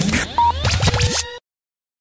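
Short electronic music sting with DJ scratch sounds, rising sweeps and brief beeping tones over a low bass hum, cutting off suddenly about one and a half seconds in.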